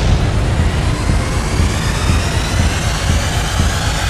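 Loud, steady rumbling roar of trailer sound effects, with faint thin tones gliding slowly downward above it.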